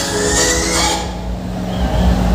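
Loud music from a large DJ sound system, heavy in bass. A rising sweep runs through the first second, then the music thins out to mostly bass and a held tone.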